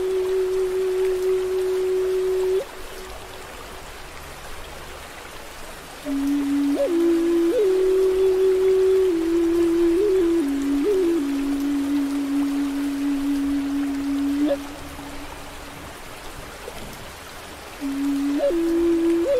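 Native American flute playing slow, held low notes with brief upward grace-note flicks, over a steady hiss of rain and a flowing stream. One long note ends a few seconds in, leaving only the rain and water. A phrase of several notes follows from about a third of the way through to near the three-quarter mark, then another pause before the flute comes back at the very end.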